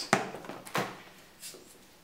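Hand balloon pump inflating a 260 modelling balloon: two pump strokes about two-thirds of a second apart, each a short rush of air that fades.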